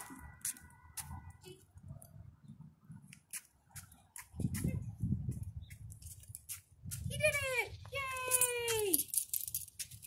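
Light irregular clicking and jingling, then two long pitched vocal calls near the end, each falling in pitch.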